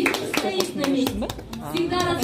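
A voice speaking in a hall, with scattered, irregular hand claps.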